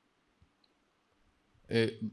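Pause in a man's talk: near silence with two faint clicks about half a second in, then a short, hesitant "eh, uh" near the end.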